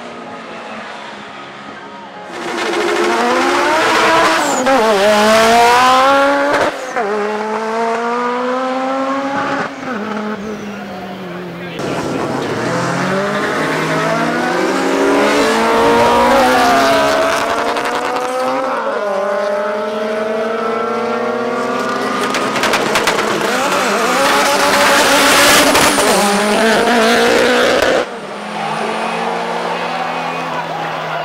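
Cars launching down a drag strip, their engines revving hard up through the gears: the pitch climbs and drops back at each gear change, over several runs cut together. There is some tyre squeal at the launches.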